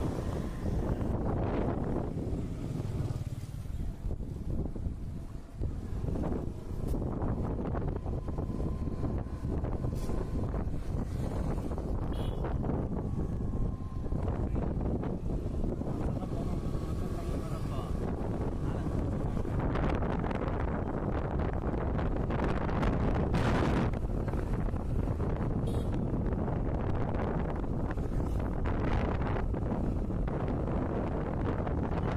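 Wind buffeting the microphone over the steady running and road noise of a moving motorbike.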